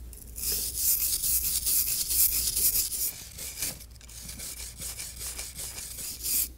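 A stiff brush scrubbing back and forth over the serrated sealing jaws of a packaging-machine crimper, a fast run of rasping strokes that turns softer about halfway through.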